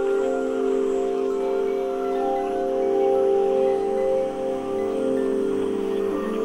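Ambient drone music: bell-like chime tones held over a steady low drone, with higher ringing tones coming in and fading out in turn.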